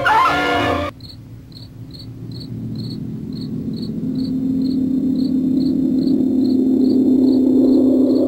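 A brass music sting cuts off about a second in. Then crickets chirp about twice a second over a low, ominous drone from the film score that swells gradually louder.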